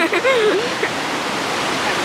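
Ocean surf breaking and washing up a sandy shore, heard as a steady rush of noise. A short voice sound comes at the very start.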